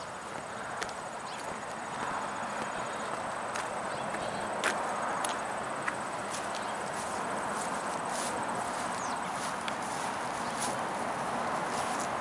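Steady outdoor rushing noise that grows slightly louder over the first few seconds, with scattered short clicks and soft sounds from a flock of Canada geese grazing close by, and footsteps on grass.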